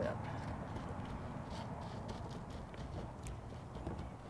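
Small pebbles clicking and shifting as hands spread gravel and press it down into a shallow terracotta saucer, a few faint clicks over a steady low rumble.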